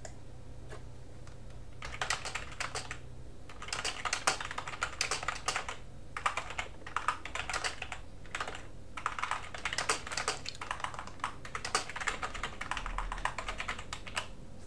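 Typing on a computer keyboard: rapid runs of key clicks in several bursts with short pauses, starting about two seconds in.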